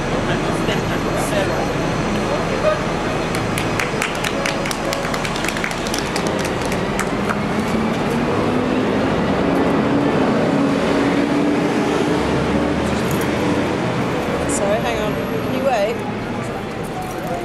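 Busy city-street ambience: traffic running and people nearby talking indistinctly. A quick run of sharp clicks comes a few seconds in, and a low steady engine hum comes through in the middle.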